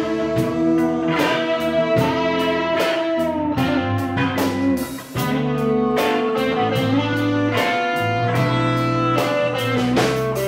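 Live rock band playing an instrumental passage with no vocals: electric guitar holding and sliding notes over bass and a steady drum beat. The sound drops briefly about five seconds in.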